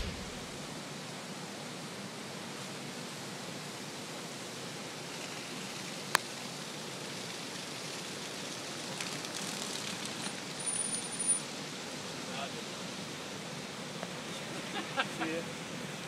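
Steady rushing noise of floodwater flowing fast, an even hiss with no rhythm. A single sharp click about six seconds in.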